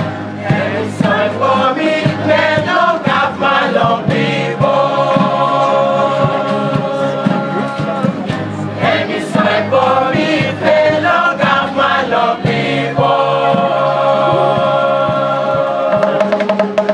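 A community choir of many voices singing a song in harmony, with long held notes, over a bamboo band's steady beat of struck tubes and low pitched tones.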